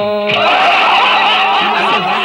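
A man's held sung note ends about a third of a second in, and laughter from many people follows.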